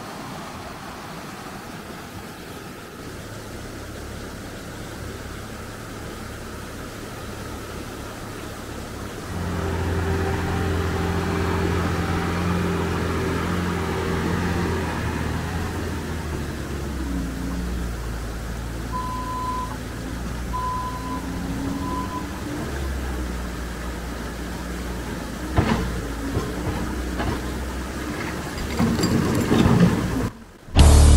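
Diesel engine of a compact track loader running, louder from about a third of the way in, with its pitch shifting partway through. Three short backup-alarm beeps sound in the middle, and there are a couple of knocks near the end, over the steady rush of a creek.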